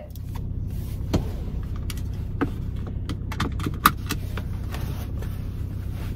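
Steady low hum of a car idling, heard inside the cabin, with scattered clicks, knocks and rattles of things being handled in the seat.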